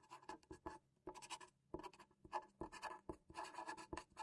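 Marker pen writing on a white board, a faint run of short, irregular pen strokes in quick succession.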